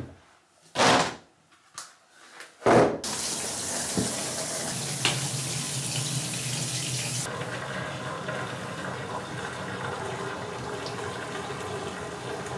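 A couple of short knocks, then a bath tap running, water pouring into the empty bathtub as it begins to fill. The hiss of the water softens about four seconds after it starts.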